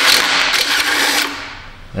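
Small cordless impact spinning an M10×1.25 thread chaser down a rusty exhaust stud, cleaning slag and rust from threads that were cut with a torch. The tool runs steadily, then dies away over the second half.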